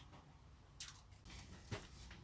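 Cling film being pulled off its roll: a faint crinkling rustle about a second in, then a short tick near the end.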